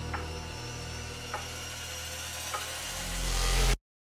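Logo-intro sound design: a steady low drone with three sharp ticks about a second apart, then a rising swell that builds and cuts off abruptly just before the end.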